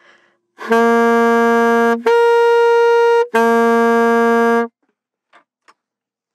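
Alto saxophone (Young Chang Albert Weber) playing an octave exercise: three long, steady notes of about a second and a half each, written G, then the G an octave higher, then the low G again, each note started separately.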